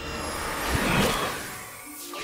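Cartoon whoosh sound effect for streaks of light zooming through the air, swelling to a peak about a second in and then fading.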